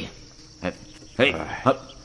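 A man chopping at a tree trunk with a hand axe: one short chop about two-thirds of a second in, then sharp "ê!" shouts of effort as he swings again. Crickets chirr steadily in the background.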